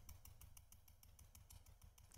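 Near silence: room tone, with only very faint, rapid, evenly spaced ticks.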